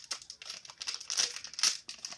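Shiny blind-bag wrapper crinkling and crackling as it is torn open by hand at its tear notch. A quick run of sharp crackles, loudest in the second half.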